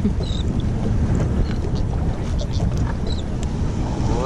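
Wind buffeting the microphone: a steady, loud low rumble, with a few faint short high ticks scattered through.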